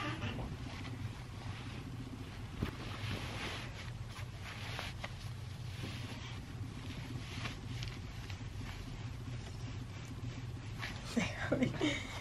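Soft rustling of denim and feet shuffling on carpet as a pair of jeans is pulled on, over a steady low hum.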